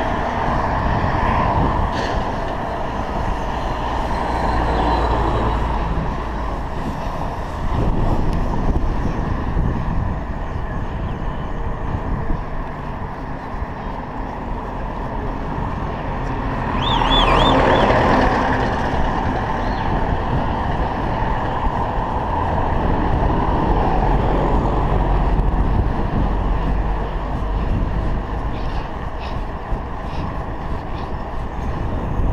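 Wind rumbling over a chest-mounted action camera's microphone while riding a bicycle along a road, with motor traffic passing. About halfway through the sound swells louder for a couple of seconds, with a brief high warbling tone in it.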